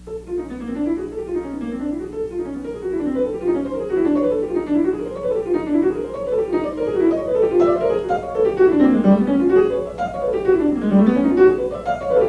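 Solo grand piano, starting suddenly with fast runs of notes that sweep up and down in repeating waves in the middle register. The runs grow louder and dip lower twice near the end.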